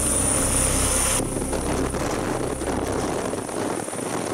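Helicopter lifting off and climbing away: a steady low rotor beat with a high, steady whine that cuts off abruptly about a second in.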